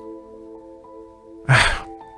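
Soft background music of steady held notes, then a short breathy sigh-like "ah" from a voice about one and a half seconds in.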